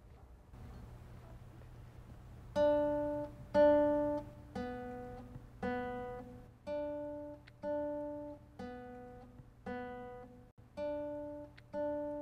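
Nylon-string classical guitar playing single notes slowly, about one a second, beginning about two and a half seconds in: D fretted on the B string plucked twice, then the open B twice, in alternating pairs, ten notes in all. It is a beginner's first left-hand exercise played with alternating rest strokes of the middle and index fingers.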